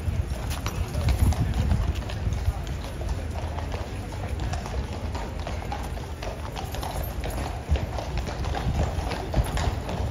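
Hooves of several Household Cavalry horses clip-clopping on paving stones as a mounted troop walks across the yard, many irregular strikes overlapping.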